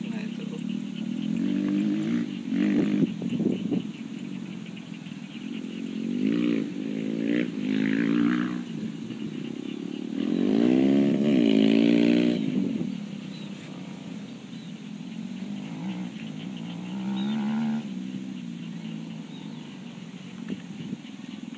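A vehicle engine revving in several surges, its pitch rising and falling, loudest about ten to twelve seconds in.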